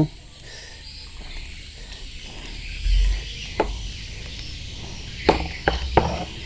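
Spark plug being unscrewed from a small motorcycle engine's cylinder head with a plug spanner: a few light metal clicks and a dull bump, over a faint steady insect chirring in the background.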